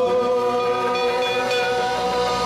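Live rock band playing, with one long note held steadily over the band.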